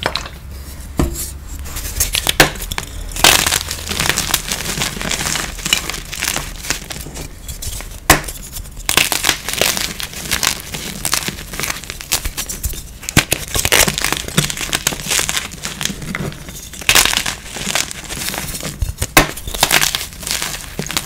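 Blocks of gym chalk being crushed and crumbled in the hands: dense gritty crunching with sharp snaps as pieces break off. The loudest snaps come about two, three and eight seconds in and again near the end.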